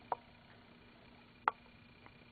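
Two light clicks about a second and a half apart, the second louder, over a faint steady hum.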